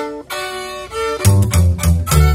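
Violin, upright bass and guitar playing the opening of a corrido. The violin starts the melody alone, and about a second in the bass and guitar come in, with the bass's deep notes loudest.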